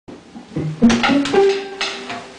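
Band instruments noodling loosely before the tune is counted in: a few pitched notes climbing upward, the last held for about half a second, with a few sharp hits in between.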